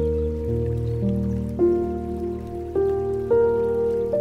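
Slow, gentle solo piano music, with a new note or chord about every half second to a second over held low notes, mixed with a soft sound of flowing water.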